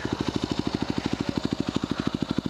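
A 2010 Yamaha WR250R's single-cylinder four-stroke engine idling steadily through an FMF Q4 full exhaust with a Megabomb header. It gives an even beat of about a dozen exhaust pulses a second.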